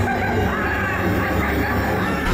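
Fireworks-show soundtrack music with loud vocals, and the crowd screaming along during a scream-along segment.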